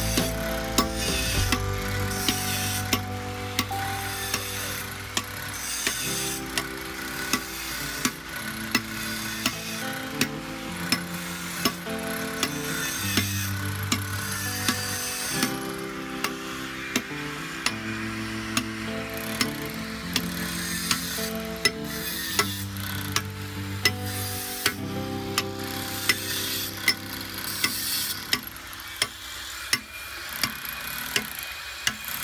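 A hammer striking a steel chisel against stone, a sharp tap roughly once a second, with the scrape of chipping stone between blows.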